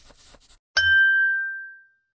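A single bell-like notification ding sound effect, struck about three-quarters of a second in with a soft low thud, ringing at one clear pitch and fading away over about a second.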